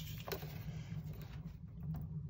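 Quiet pause: a low, steady hum with a faint click or two.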